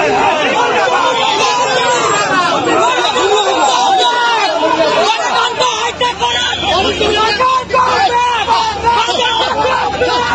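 A crowd of protesters shouting and talking over one another, many voices at once and loud.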